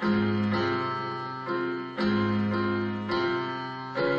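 Casio electronic keyboard played with a piano sound: chords struck at the start and about two seconds in, with lighter chords between, each ringing and fading before the next.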